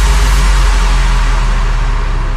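A cinematic sound-design boom: a loud, deep low rumble under a wash of hiss, holding steady.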